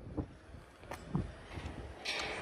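Honda CR-V power tailgate unlatching and lifting open: a few faint clicks and knocks under a low rumble of wind on the microphone.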